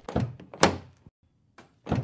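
A few dull thunks from a car door on a large old sedan, with the loudest a little over half a second in and two more near the end.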